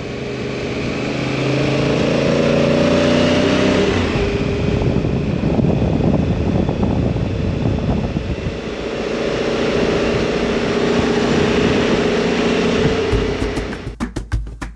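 Honda Africa Twin's parallel-twin engine running as the motorcycle rides through traffic, with a stretch of rushing wind noise in the middle. A percussive music beat comes in near the end.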